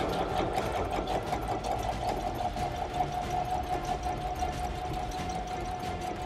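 Brother ST371HD Strong & Tough mechanical sewing machine stitching through two layers of leather: a steady motor whine with rapid, even needle strokes.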